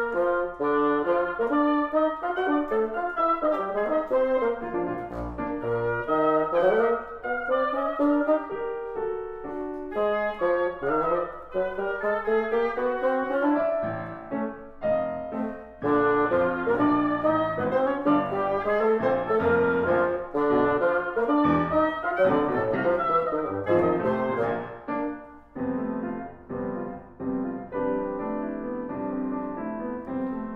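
Live chamber trio of grand piano, oboe and bassoon playing a busy contrapuntal passage, the double reeds weaving melodic lines over the piano. Near the end the oboe drops out.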